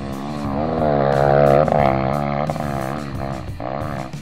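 A dirt bike engine revving up and down, loudest about a second and a half in, over background music.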